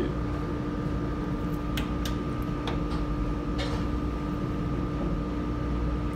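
Steady ventilation hum with a low rumble and two steady tones, one lower and one higher, and a few faint light clicks as a pencil and metal dividers are handled on the desk.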